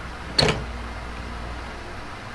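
Steady background hiss and low hum, with one sharp knock about half a second in.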